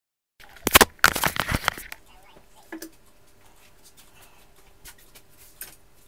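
Rustling and scraping of a phone handled against its microphone, loud for about a second and a half near the start, then a quiet room with a faint steady hum.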